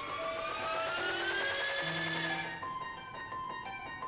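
Recorded keyboard part playing back clean, with the Radial Space Heater bypassed, so it has no transformer colour or tube drive. Tones glide upward over the first two seconds and fade, followed by held notes.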